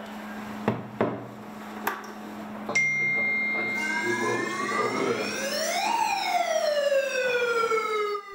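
A few sharp clicks, then a steady high tone, then a siren winding up to a peak about six seconds in and falling away slowly.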